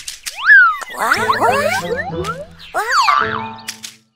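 Cartoon boing and swoop sound effects: one sharp up-and-down glide about half a second in, then a flurry of many short rising swoops, over light children's background music.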